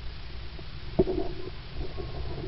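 Low rumble of wind and jostling on a carried camera's microphone while running, with one sharp knock about halfway through.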